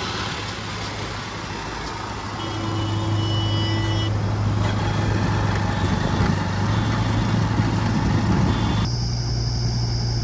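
JCB 3DX backhoe loader's diesel engine running steadily as the machine drives along a road, with tyre and wind noise. The sound changes abruptly about nine seconds in.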